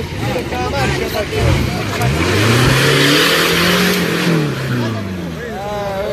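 Off-road 4x4 engine revving up, holding high for a second or two, then easing back down while the vehicle drives through mud, loudest near the middle with a rush of noise. Spectators talk at the start and end.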